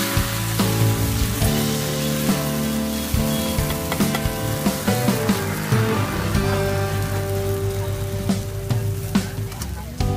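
Yellow crepe batter frying and sizzling in hot woks, with sharp clinks of a metal ladle against the pans. Steady background music plays over it.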